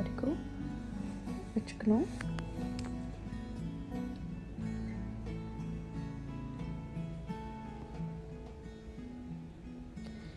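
Background music: a plucked acoustic guitar playing a slow run of held notes.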